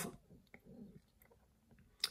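Near silence: room tone, with a few faint clicks in the first second.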